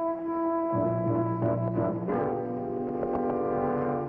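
Dramatic orchestral underscore of sustained brass chords, the chord changing about a second in and again about two seconds in.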